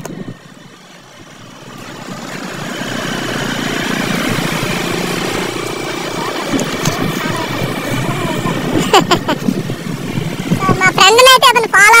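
Motorcycle engine and wind noise while riding, building over the first few seconds and then holding steady. A man's voice starts talking near the end.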